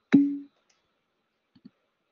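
A single sharp computer keyboard click with a short low hum trailing after it, then two faint ticks about a second and a half later.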